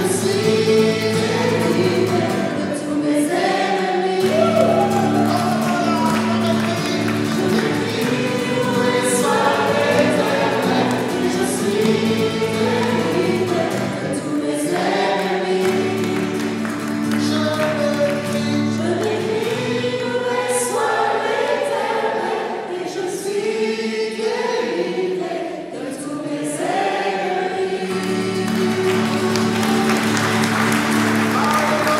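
Live worship song: two women and a man singing together into microphones, accompanied by acoustic guitar over steady sustained chords.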